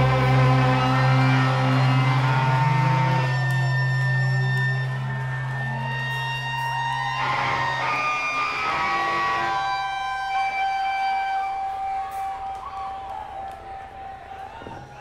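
Electric guitars and bass holding a chord with long, steady guitar feedback tones that shift pitch. The low bass note drops out about halfway through, and the sound fades toward the end as the song rings out.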